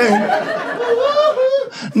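Laughter right after a punchline, with one voice laughing clearly above the rest.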